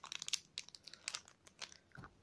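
A toy blind bag wrapper crinkling as it is opened by hand: faint, irregular crackles, densest at first and thinning out after about half a second.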